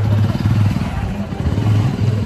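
A motorbike or scooter engine running close by on a busy street, its low pulsing note rising and falling in level, with voices around it.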